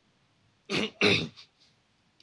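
A man clearing his throat into a handheld microphone, two quick rasps in a row a little under a second in.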